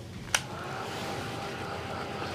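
A small handheld craft heat tool clicks on about a third of a second in, then runs with a steady blowing whir as it dries wet paint on the painting.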